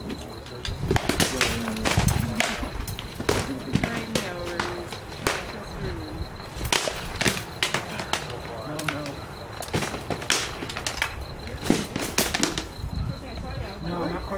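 Sword blows striking shields and armour during armoured sparring: many sharp knocks in irregular flurries that stop near the end.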